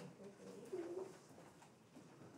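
Faint, low murmur of a student's voice in a quiet classroom, a brief sound about a second in, over room tone.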